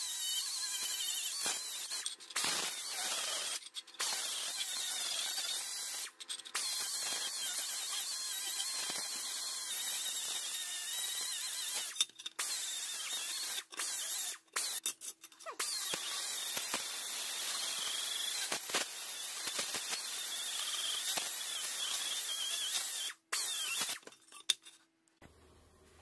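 Right-angle die grinder with a small sanding pad running at high speed against a bare pressed-steel toy truck panel, a steady high-pitched hiss and whine that stops and starts several times in short breaks.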